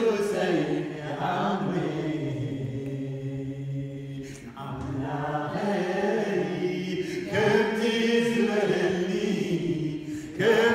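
Voices chanting together in worship, unaccompanied, with long held notes. They dip briefly about halfway through, then build again.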